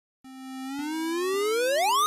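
Synthesized rising tone for a logo intro: a buzzy electronic note starts about a quarter second in and glides steadily upward in pitch, growing louder, with faint ticks about every half second.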